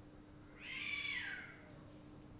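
A single short pitched call, like an animal's, lasting about a second from just after the start, falling in pitch as it ends.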